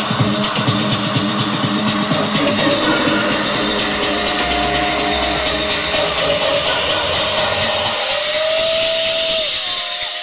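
Electronic dance music from a DJ set, played loud over a sound system. The deep bass drops out about eight seconds in, leaving a gliding synth line.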